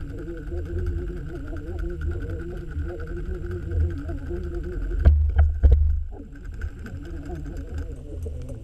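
Muffled underwater noise picked up through a camera housing: a steady low rumble with a faint constant whine and scattered small ticks, broken about five seconds in by a few loud sharp knocks.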